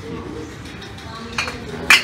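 Glass sparkling-wine bottle set into a metal shopping trolley: a light knock, then a sharp glass clink near the end, over a steady low hum.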